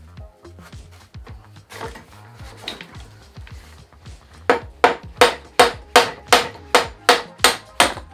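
A run of about ten hammer blows, evenly spaced at nearly three a second, starting about halfway through: driving the headset out of the bike frame's head tube. Background music plays underneath.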